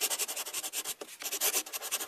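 Scratchy rubbing sound effect, like scribbling, in several short bursts with brief gaps between them.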